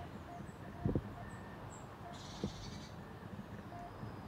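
Quiet room with two soft footsteps, about a second in and again halfway through, and a few faint short chirps in the background.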